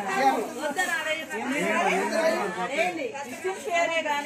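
Several people, men and women, talking over one another.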